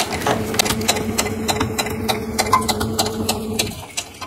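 Electric sewing machine running steadily, stitching through heavy beaded tweed fabric, then stopping just before the end.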